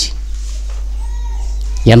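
A man's speech through a microphone breaks off and picks up again near the end, with a steady low hum underneath. About a second in, a faint short call rises and falls in pitch.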